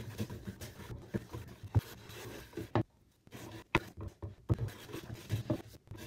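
Hand bench plane pushed along a soft maple board, its iron scraping off shavings in a run of separate strokes with a short pause about three seconds in.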